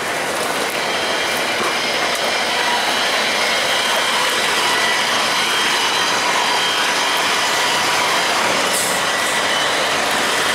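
Diesel coach engine idling with a steady high whine, several high tones over a hiss, growing a little louder in the first few seconds.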